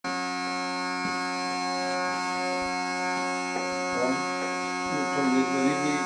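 Northumbrian smallpipes drones sounding a steady, reedy chord, bellows-blown, with no tune yet from the chanter.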